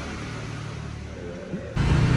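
A quiet low hum, then, with an abrupt jump near the end, a motorcycle engine idling loudly and steadily: the Honda CRF150L's single-cylinder four-stroke engine running.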